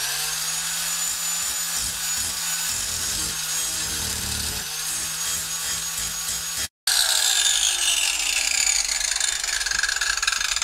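Angle grinder running steadily with a high whine as it grinds the head off a bolt. After a brief break near the middle, the grinder winds down, its whine falling in pitch.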